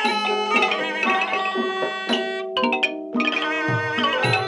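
Thai piphat mai khaeng ensemble playing, with hard-mallet xylophones and gong circle over held wind tones. Low drum strokes come in near the end.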